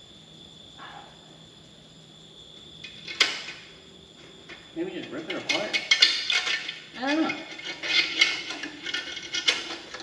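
Metal clattering and clinking as old car parts are handled. A single sharp knock comes about three seconds in, and the clanking grows busier from about five seconds on, with a few short squeaks.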